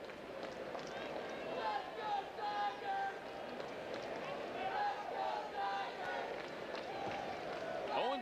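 Ballpark crowd chatter, with the voices of individual fans calling out now and then over the general noise of the stands.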